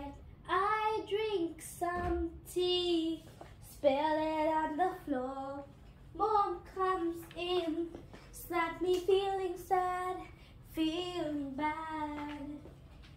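A child singing unaccompanied, in short melodic phrases with brief pauses between them.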